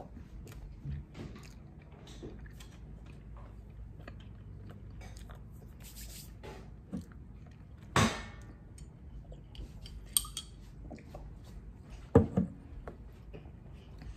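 A Ramune soda bottle knocking and clinking as it is lifted, drunk from and set down: a sharp knock about eight seconds in, a brief ringing clink about two seconds later, and another loud knock near the end, with faint chewing between.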